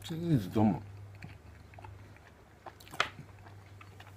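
A man eating: two short falling vocal hums near the start, then chewing with a few sharp wet mouth clicks, the loudest about three seconds in.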